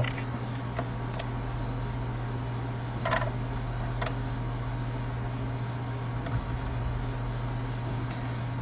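A few scattered clicks of laptop keyboard keys pressed during start-up, over a steady low hum.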